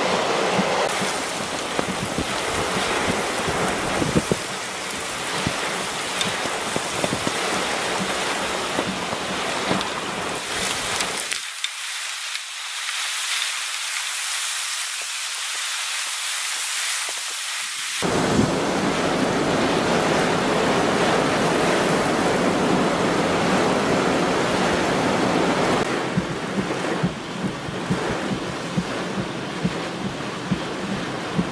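Hurricane wind and heavy rain, with gusts buffeting the microphone. About eleven seconds in the low rumble drops out for several seconds, leaving a thinner hiss of rain, before the full sound returns.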